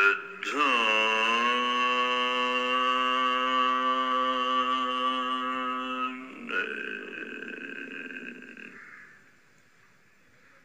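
A man chanting a long, held note that slides down at its start and then stays steady for about five seconds. A fainter, breathier continuation follows and fades away near the end.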